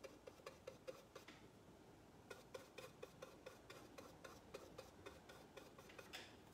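Near silence: room tone with faint, rapid ticking, about five ticks a second, which pauses for about a second shortly after it starts.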